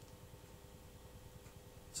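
Near silence: faint steady background noise with a thin, steady tone.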